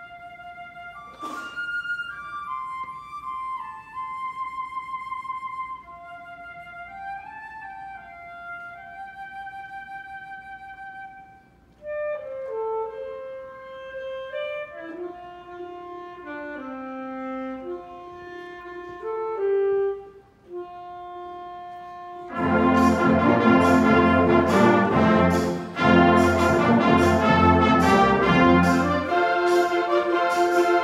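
School concert band playing a gospel-flavoured piece. It opens with soft, slow melodic lines from a few wind instruments. About 22 seconds in, the full band comes in loud, with trumpets and clarinets over a steady beat.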